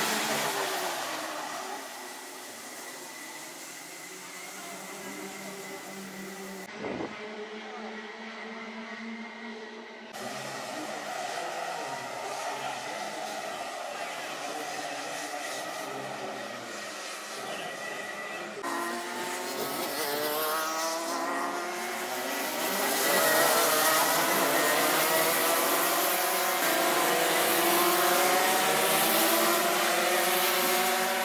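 A pack of two-stroke racing kart engines on track, several engines overlapping, their pitch rising and falling as the karts accelerate and pass. The sound changes abruptly a few times and is louder and fuller in the second half.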